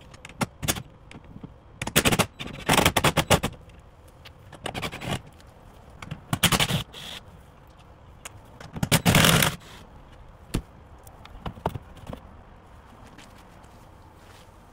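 Cordless impact driver running in short bursts of rapid hammering, about five of them, loosening bolts on a jet ski.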